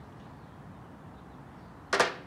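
A phone set down on a perforated metal patio table, making one sharp clack with a brief ring near the end, over faint steady background noise.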